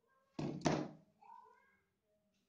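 Two quick knocks on the desk about half a second in, as a pencil is picked up and set against the paper and ruler, followed by a faint short rising tone.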